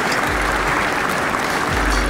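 Audience applauding, a dense, even clatter of clapping, with background music underneath.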